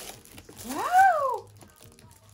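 Plastic gift wrapping crinkles as it is handled, then a young child gives one loud, high exclamation that rises and then falls in pitch about a second in.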